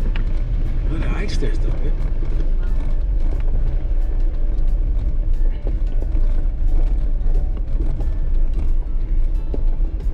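Jeep Wrangler Rubicon crawling over a loose rocky trail, heard from inside the cab: a steady low rumble of engine and tyres with constant rattles and knocks as the heavily loaded rig is shaken by the rough ground.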